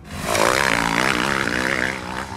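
Motorcycle engine sound effect: a loud engine running with a rush of wind, coming in suddenly, holding for about two seconds, then fading.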